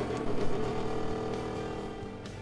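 Small battery-powered 12-volt air pump running with a steady hum, pumping air through its tubing to aerate a fish-hauling tank.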